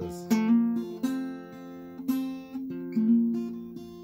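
Acoustic guitar capoed at the first fret, played from an E-shape chord: a slow pattern of about five or six strummed and picked strokes, each left to ring into the next. It is a simplified take on the song's opening part.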